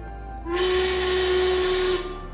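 Steam whistle blowing one steady blast with a loud hiss of steam, starting about half a second in.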